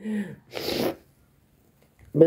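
A short voiced sound from a person, then a sharp burst of breath noise about half a second in, like a sneeze.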